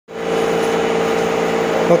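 Steady machine hum with a few fixed tones, a motor or fan running at constant speed, which stops near the end as a voice says "Oke".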